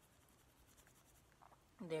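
Faint, scratchy rustling of hands handling a lollipop, then a man's voice begins near the end.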